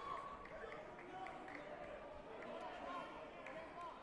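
Indistinct voices of several people talking in a sports hall, with a few faint knocks.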